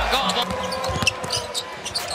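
Basketball bouncing on a hardwood court during live play, heard as scattered sharp thuds and ticks over steady arena background noise.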